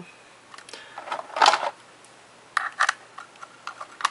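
Handling noise from a plastic USB Wi-Fi adapter and its screw-on antennas: scattered sharp plastic clicks and taps, a short scrape about one and a half seconds in, and a quick run of small ticks near the end.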